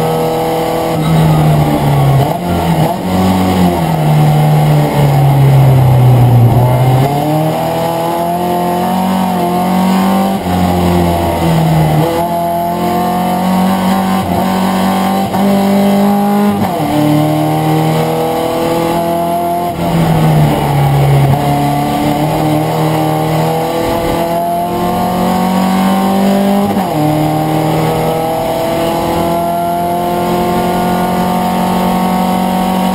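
A VW Fusca (Beetle) race car's air-cooled flat-four engine at racing speed, heard from inside the cabin. Its note climbs as the car accelerates and drops sharply at each gear change, several times over.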